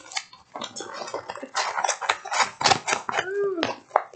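A stiff diamond-painting canvas being handled, crackling and clattering in a quick run of sharp clicks. The canvas is stiff like cardstock or poster board.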